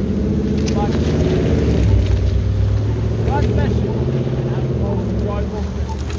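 Road traffic at a street corner: motor vehicle engines running with a steady low drone.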